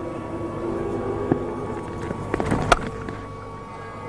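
Steady crowd murmur in a cricket ground, with one sharp crack of bat hitting ball a little under three seconds in.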